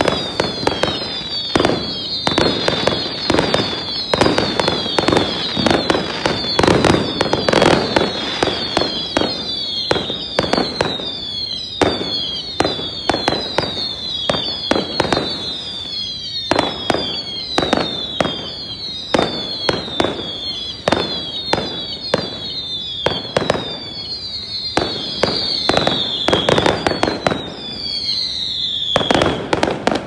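Fireworks going off: a rapid, irregular string of loud bangs mixed with many overlapping short whistles that fall in pitch. It cuts off abruptly just before the end.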